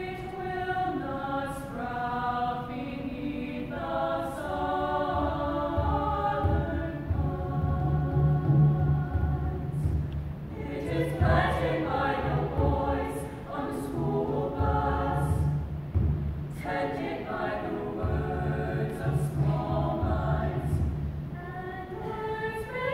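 A girls' high school choir singing a piece in harmony, in sustained phrases with a brief break about ten seconds in. A low accompaniment from piano and a hand drum sounds beneath the voices.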